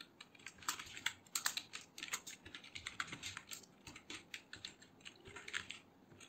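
Typing on a computer keyboard: an irregular run of key clicks, rapid over the first few seconds and then sparser.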